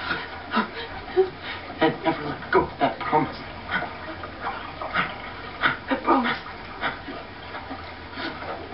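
Shaky, whimpering breaths and sobs from a person, coming in short irregular bursts.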